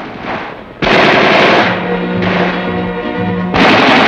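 Machine-gun fire in long sustained bursts, starting about a second in and breaking off briefly near the end before resuming, with music playing underneath.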